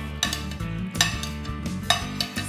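A metal spoon scraping and clinking against a ceramic plate, with two sharp clinks about a second apart, over background music.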